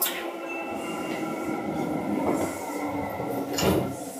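Seibu 2000 series electric train running, heard from inside the car: steady whining tones over the rumble of wheels on rail, with a sharp knock at the start and a louder rushing burst about three and a half seconds in.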